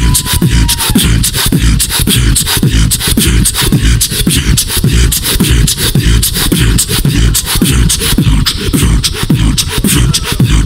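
Human beatboxing amplified through a handheld microphone and PA: a fast stream of sharp percussive clicks and snares over a deep bass that drops in pitch again and again.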